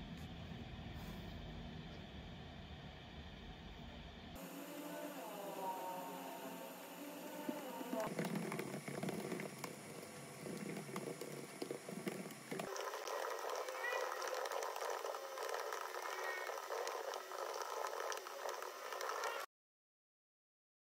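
Faint, muffled voices with no clear words, in a few short spliced clips that change abruptly every few seconds. The sound cuts off suddenly near the end.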